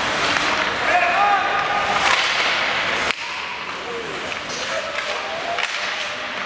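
Ice hockey in an echoing arena: a few sharp cracks of sticks and puck, over a steady wash of rink noise, with short shouts from players or spectators. The sound changes abruptly about halfway through.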